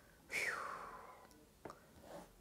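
A woman's breathy sigh, falling in pitch and fading over about a second, followed by a faint click.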